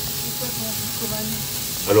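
Pieces of beef fillet sizzling steadily as they sear in a dry pan with no oil or fat.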